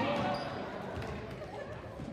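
Basketball dribbled on a gym floor during a live game, with indistinct shouts from players and spectators.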